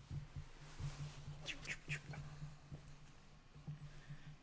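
Close movement and handling noises from a person settling back in front of the microphone, with a few short squeaks about one and a half seconds in.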